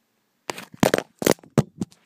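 Handling noise: a quick run of sharp knocks and scrapes on the body of the recording camera as it is grabbed and moved, starting about half a second in, with the loudest knocks near the middle.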